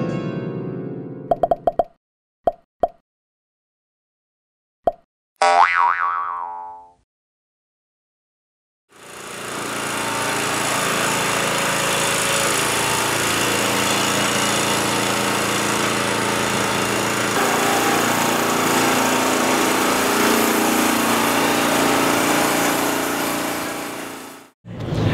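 A few short pops and a brief pitched sound effect follow the end of a keyboard music sting. After a couple of seconds of silence comes steady city street noise with traffic.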